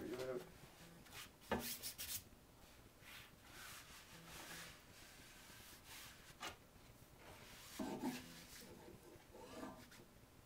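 A hand-held covering iron sliding and rubbing over Poly-Fiber polyester aircraft fabric, a faint scratchy swishing with a few light knocks from the iron.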